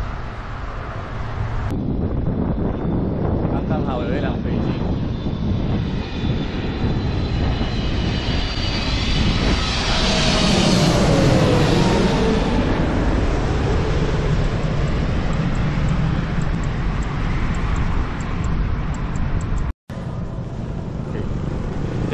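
A fixed-wing aircraft, likely a jet airliner, passes low overhead. Its engine noise swells to a peak about ten to twelve seconds in, with a falling whine as it goes by, then fades. Steady wind rumble from a moving bicycle camera lies beneath it.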